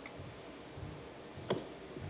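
Low room tone with a single sharp click about one and a half seconds in, after a fainter tick about a second in.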